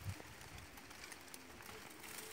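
Faint outdoor background noise, with a brief soft click just after the start.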